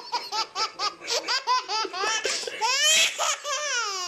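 A man laughing hard and high-pitched: a quick run of 'ha-ha-ha' bursts, about five a second, that stretches into longer, swooping laughs about halfway through.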